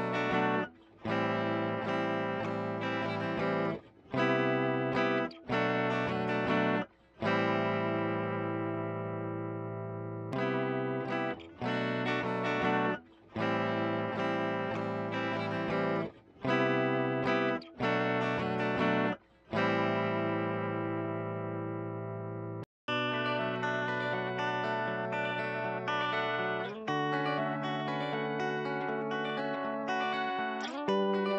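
A guitar loop: melodic guitar chord phrases that stop abruptly every one to three seconds and then start again. About 23 seconds in it cuts off and a different, busier guitar loop begins.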